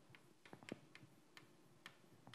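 Faint, irregular taps and ticks of chalk on a blackboard during writing, several small clicks a second.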